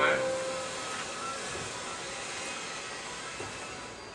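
Steady rushing, rumbling noise of the Hogwarts Express ride train, fading gradually after a brief loud swell at the start.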